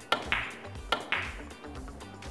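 Carom billiard balls clicking on a three-cushion shot: the cue tip strikes the cue ball just after the start, the balls collide with a ringing click, and another pair of sharp clicks follows about a second in. The later collision is a kiss, the balls meeting a second time and spoiling the shot.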